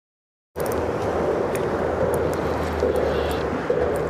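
The sound cuts out for about half a second, then a motorboat passing close by runs with a steady drone, and its wake sloshes against the hull of the fishing boat with scattered small knocks.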